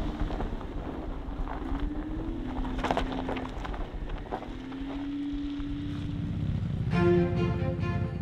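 A car's engine running, its hum rising and falling in pitch, with a few short knocks about three seconds in. Background music comes in about seven seconds in.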